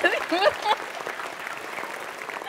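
Studio audience applauding, with a few brief spoken sounds over it in the first second.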